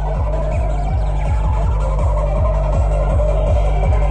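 Loud hard techno (free-party tekno) played through a sound system: a fast, steady kick drum over heavy bass, with a synth line wavering in the middle.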